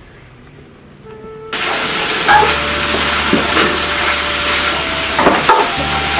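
Greens frying in a wok with a steady loud sizzle and the occasional scrape of a spatula stirring them. It starts suddenly about a second and a half in, after a quiet start.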